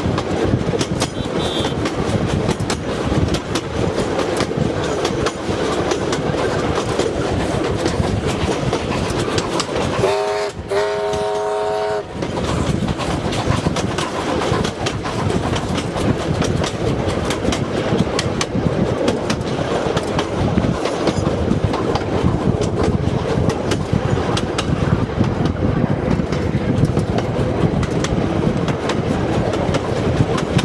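Steam-hauled passenger train running, heard from a carriage window: a steady rumble with repeated clacks of the wheels. About ten seconds in, the locomotive's whistle sounds once for about two seconds, rising quickly to a steady pitch.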